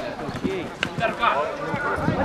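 Footballers shouting to each other across the pitch, with a sharp thud of a football being kicked just under a second in.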